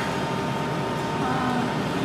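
Steady mechanical background hum with a thin, constant high tone running through it, with faint talk in the second half.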